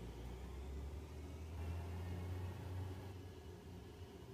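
Room tone: a low steady rumble with a faint hiss, swelling slightly in the middle and easing off toward the end.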